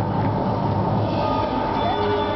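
Soundtrack of a panoramic film playing through theatre speakers: a loud, steady low rumble with held tones above it.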